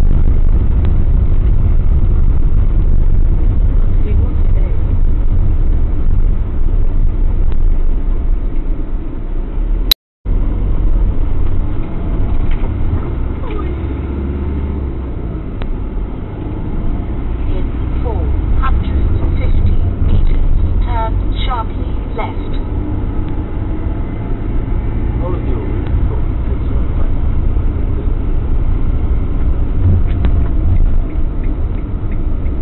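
Motorhome driving, heard from a dashcam in the cab: a steady low rumble of engine and road noise. At first the tyres run over the stone setts of a bridge, and the sound cuts out for a moment about ten seconds in.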